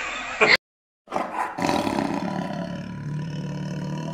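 A man laughs briefly, cut off after half a second. After a short silence, a big-cat roar sound effect starts about a second in and carries on through the end, strong at first and then held.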